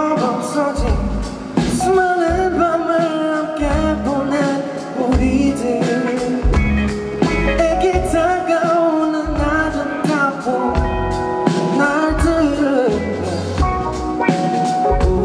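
A male vocalist singing live into a microphone over instrumental accompaniment with bass and drums.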